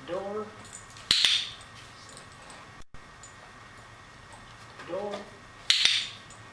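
A hand-held dog-training clicker clicks twice, sharply, about a second in and again near the end. Each click marks the moment the dog touches the target post-it note with her nose, and is closely preceded by a short spoken cue.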